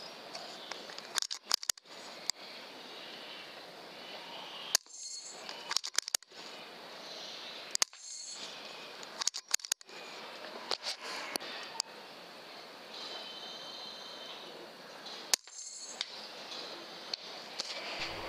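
Hiss from a night-vision rifle scope's built-in microphone, broken several times by sharp cracks of a PCP air rifle firing at rats, a few seconds apart.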